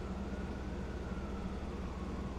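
A steady low hum, with a faint thin tone held above it.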